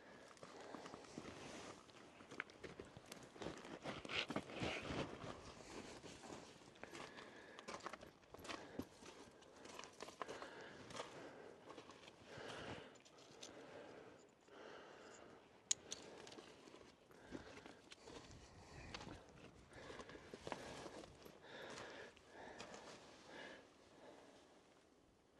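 Faint footsteps crunching on loose sandstone rubble and gravel, an uneven run of steps, loudest about four seconds in, with one sharp click about two-thirds of the way through.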